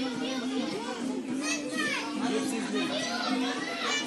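Children's voices and people talking in a busy restaurant dining room, with background music.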